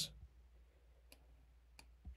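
Near silence with two faint clicks from a computer mouse, one a little past a second in and one near the end.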